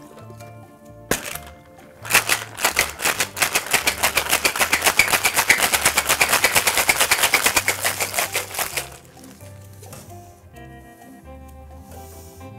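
Ice rattling inside a metal tin-on-tin cocktail shaker, shaken hard in a fast, even rhythm for about seven seconds. It comes after one sharp knock as the two tins are pressed together.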